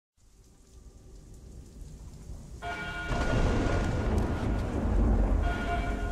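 Film-soundtrack rain and thunder fading in from silence: a low thunder rumble builds, then heavy rain comes in loudly about two and a half seconds in. A few steady ringing tones sound briefly as the rain starts and again near the end.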